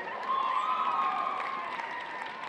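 Arena crowd applauding and cheering, with one long high-pitched cheer standing out above the clapping from about a third of a second in.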